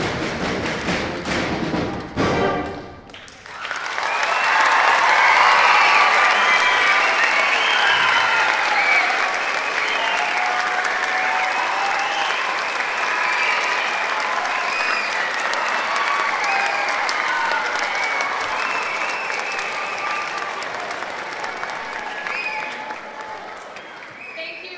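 A school concert band plays the last seconds of a piece, ending about two and a half seconds in with a sharp final hit. The audience then breaks into applause with cheering voices, which fades near the end.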